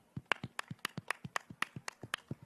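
Two men clapping their hands while holding handheld microphones, a quick, even run of separate claps, about seven a second.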